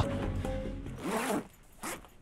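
A zipper on a fabric bag being pulled, with the bag rustling as it is handled, for about a second and a half, then a short zip-like burst near the end, over faint background music.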